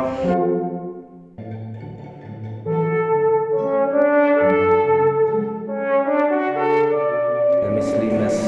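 Alto trombone playing a slow melody of long held notes, with a string quartet sustaining chords beneath it; the music thins for a moment about a second in, then fills out again. A man starts speaking right at the end.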